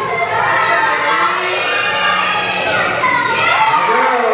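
Spectators, many of them children, cheering and shouting, with many voices overlapping throughout.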